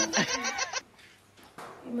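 A quavering, bleat-like laugh that breaks off under a second in, followed by a brief hush and then talking.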